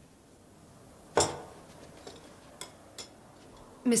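China cups and saucers clinking as the dishes are cleared from a table: one sharp clink about a second in, then two light ticks.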